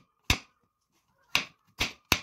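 Kitchen knife slicing down through a large mushroom and knocking on the cutting surface: three sharp chops at an uneven pace, one early and two close together near the end.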